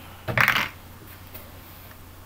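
A short clatter of handling noise about half a second in, as a framed whiteboard is moved and gripped.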